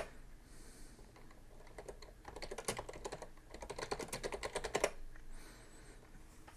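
Typing on a computer keyboard: two runs of quick keystrokes, a short pause between them, as a terminal command is typed.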